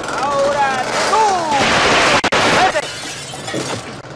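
Film soundtrack playing: voices with sliding pitch, then a noisy crash of under a second about halfway through, then more voices.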